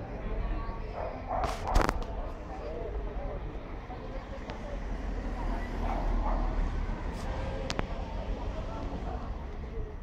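Indistinct, distant voices over a steady low rumble of arcade and street background. A couple of sharp clicks come just under two seconds in.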